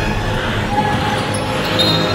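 A basketball being dribbled on a gym court, bouncing in a large echoing hall, with voices in the room.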